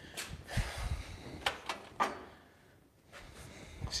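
A few light knocks and rustles as loose car trim parts are picked up and handled, dying away about two and a half seconds in.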